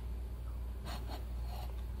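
Quiet room tone with a steady low hum, and a brief faint rustle about a second in.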